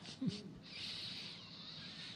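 Quiet pause between spoken phrases: a brief low, falling voice-like sound, then a soft hiss.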